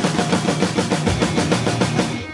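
Drum kit played with sticks in a fast, even run of strokes on snare and toms, about ten hits a second.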